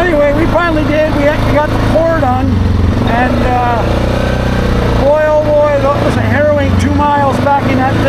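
ATV engine running at a steady cruising speed with a constant low hum, under a man talking.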